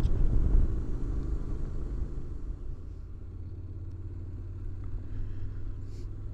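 Honda NC750X's parallel-twin engine running under way, mixed with wind rumble on the onboard microphone. The sound is loudest over the first couple of seconds, then settles to a quieter, steady low hum.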